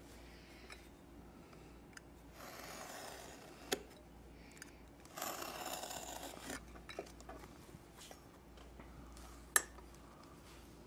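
A utility knife drawn along a metal straight edge, slicing through four-to-five-ounce vegetable-tanned leather in two faint scraping strokes, about two and a half and five seconds in, the second longer and louder. Sharp clicks of tools on the bench come between them and near the end.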